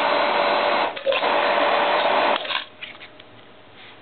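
Electric motor spinning the magnet rotor of a homemade magnetic induction heater at about 3,500 RPM, running with a steady whine, then switched off about two and a half seconds in and dying away quickly.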